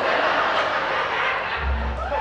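Javanese gamelan accompaniment playing briefly, with a deep gong stroke that starts about a second and a half in and rings on.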